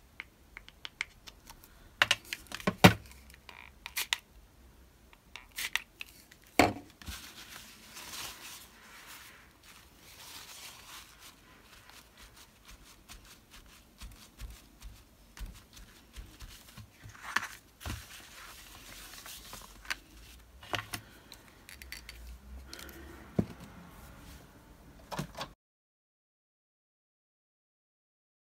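Craft supplies handled on a cutting mat: scattered sharp knocks and clicks, the loudest a few seconds in, with stretches of a paper towel rustling and dabbing against card in between.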